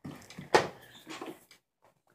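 Bearded dragon biting and chewing a dubia roach: a sharp crunch about half a second in, then several smaller clicks from the jaws working on the roach.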